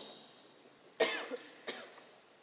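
A person coughing: one sharp cough about a second in, followed by a smaller one.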